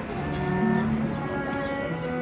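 Erhu, the two-string Chinese bowed fiddle, playing a slow melody of long held notes that change pitch a few times.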